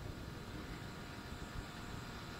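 Faint steady background noise of the room and recording: an even hiss and low rumble with a few faint steady tones, no distinct events.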